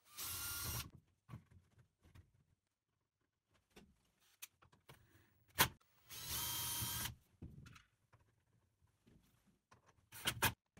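Cordless drill running in two short bursts of about a second each, drilling holes through the plastic bucket wall at the marked line, with a steady motor whine. A single sharp knock comes just before the second burst.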